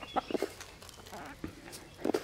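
Small flock of hens clucking softly while feeding, with scattered short ticks of pecking at scattered grain and mealworms.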